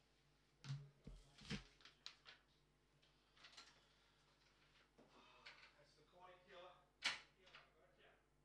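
Mostly quiet room tone with a few sharp knocks and clicks, a cluster of them about a second in and a louder click near the end, and faint voices talking in the background over the second half.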